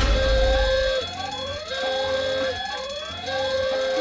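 Home burglar alarm siren going off in a cartoon: repeated rising electronic whoops, about one a second, alternating with a steady held tone. It starts suddenly with a low rumble in the first second.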